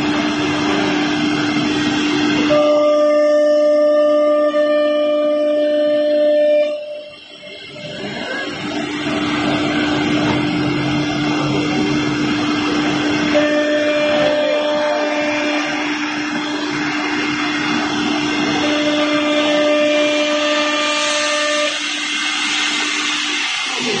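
CNC router's electric spindle running with a steady whine as its bit cuts through board, with a higher tone coming in and out three times; the sound drops briefly about seven seconds in.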